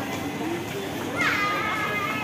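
Crowd chatter of shoppers talking in a busy indoor shopping arcade. A louder, higher-pitched voice calls out about a second in.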